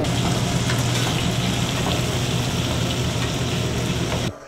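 Pancake batter frying on a flat-top griddle: a steady sizzle with a low, even hum underneath.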